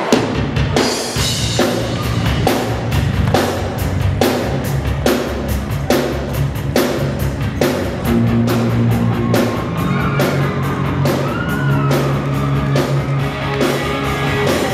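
Live rock band starting a song: a drum kit hitting a steady beat about twice a second under electric guitar and bass, with a higher melody line coming in about two-thirds of the way through.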